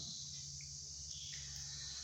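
Faint, steady high-pitched chirring or hiss over a low steady hum, with no speech.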